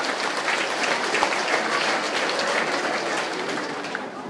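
An audience of children and adults applauding, many hands clapping, dying away near the end.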